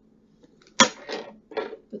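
A small hard object being set down on a table: one sharp tap a little under a second in, followed by brief handling noises.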